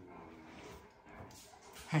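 Great Dane whimpering softly: a low, drawn-out whine in the first half second, then faint sounds.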